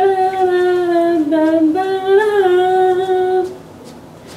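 A high voice singing a wordless melody without accompaniment, in long held notes that slide gently between pitches, ending about half a second before the end.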